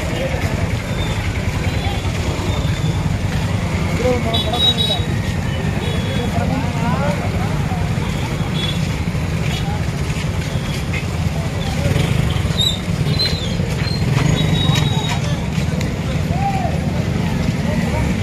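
Outdoor street noise around a crowd on foot: scattered voices over a steady low rumble of traffic.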